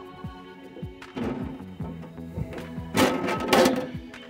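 Background music with steady held notes. About three seconds in comes a brief thunk and rustle from the printer's top lid being handled.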